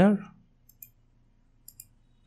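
Computer mouse button clicks: two quick double clicks about a second apart, faint and sharp.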